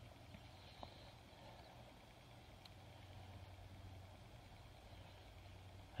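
Near silence: room tone with a faint steady low hum and one faint tick a little under a second in.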